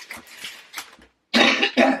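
A woman coughing twice in quick succession, two short loud coughs a little past the middle.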